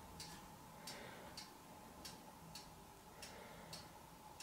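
Faint, regular ticking, a little under two ticks a second, in an otherwise near-silent room.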